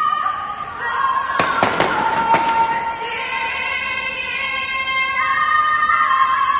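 A woman singing the national anthem over a stadium PA, holding long notes. About a second and a half in, a quick run of about five sharp firework bangs goes off within one second.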